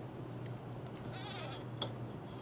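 Graphite pencil drawn along a steel ruler on drawing paper: a faint wavering scratch about a second in, then a light click near the end, over a low steady hum.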